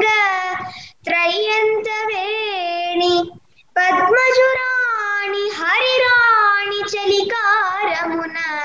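A girl singing a Telugu padyam (classical verse) unaccompanied, holding long notes with wavering, ornamented turns, and breaking off briefly twice, about a second in and about three and a half seconds in.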